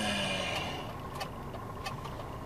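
Truck cab: the engine hums steadily while the hazard-light flasher ticks about every two-thirds of a second. A hiss fades out during the first second.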